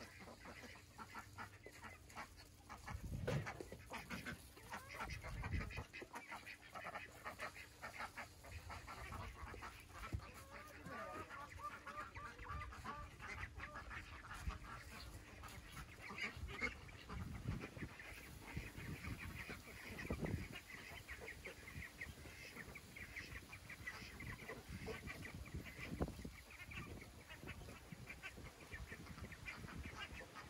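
Young ducks calling over and over in short calls, with a few dull knocks from the wire-mesh door of their shelter being worked.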